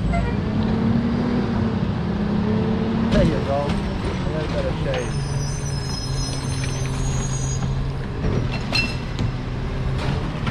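Rear-loading garbage truck's diesel engine running steadily, a low hum under road noise, with a faint voice about three seconds in.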